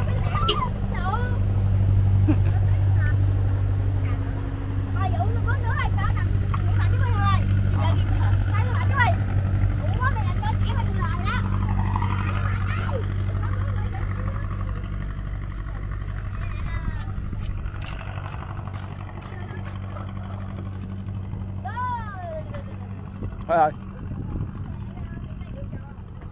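A steady low engine hum that fades gradually over the second half, with scattered children's voices and calls over it.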